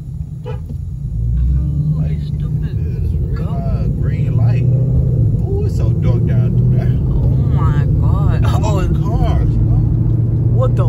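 Car driving, heard from inside the cabin: a steady low engine and road rumble that grows louder about a second in as the car picks up speed. Indistinct voices talk over it at times.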